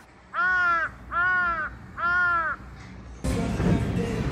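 Three crow caws, each about half a second long and evenly spaced, dropped in as an edited-in sound effect over a transition; background music comes back in near the end.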